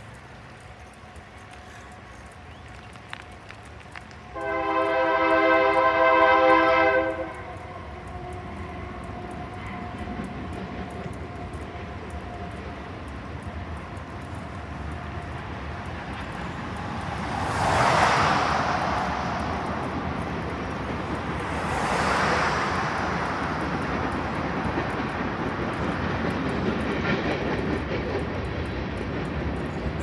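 Freight locomotive air horn sounding one loud chord blast of several notes about four seconds in, lasting under three seconds. Afterwards a steady rumble of road and rail noise builds, with two swells of rushing noise in the second half.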